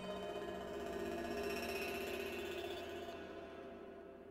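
Generative modular synthesizer patch: sine-wave oscillators ring-modulated and run through Mutable Instruments Rings resonator and Beads granular processor, sounding as a soft, dense cluster of many sustained metallic tones. The high tones drop out about three seconds in and the cluster fades toward the end.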